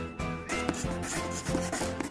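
Scribbling sound effect of colouring strokes, a dry rubbing like a crayon on paper, starting about half a second in over background music with a steady beat.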